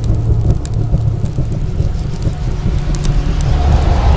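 Cinematic sound-effect build-up for an animated fire logo reveal: a loud, deep rumble with scattered crackles, and a rising tone entering near the end.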